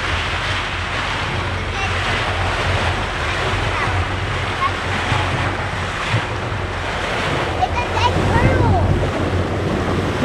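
Wind on the microphone and water rushing along the hull of a boat moving slowly on calm sea, over the steady low hum of the boat's engine. Faint voices can be heard near the end.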